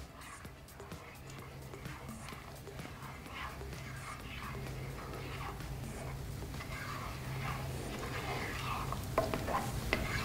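A spatula stirring kofta in warm yogurt sauce in a pot on the stove, with soft scraping and a few sharp clicks against the pot near the end. A low steady hum lies under it, and the sound slowly grows louder.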